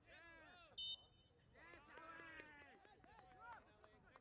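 Faint shouts of players and spectators across a soccer pitch, with one short, sharp whistle blast just under a second in.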